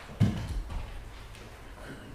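A single heavy thump a fraction of a second in, then a few lighter knocks and rustles, as choir members settle into their seats.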